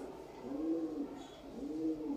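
A bird calling: low notes that rise and fall, repeated about once a second.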